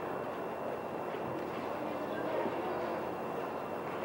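Steady background noise of a large hall with faint, indistinct voices under it, and no clear speech or distinct events.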